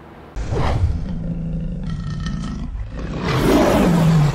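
Lion roar sound effect in an animated logo sting: a low rumbling growl that starts about a third of a second in and swells louder near the end.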